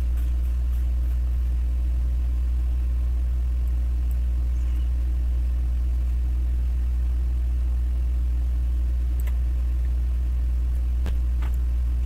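Steady low hum with a ladder of evenly spaced overtones, unchanging throughout: background noise on the recording. A couple of faint clicks near the end.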